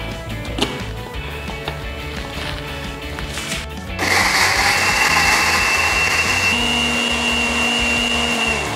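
Countertop electric blender starting suddenly about halfway through and running steadily with a high whine, grinding shallots, garlic, candlenuts and ginger with a little water into spice paste. Before it starts, a few light clicks as the lid is fitted onto the jar.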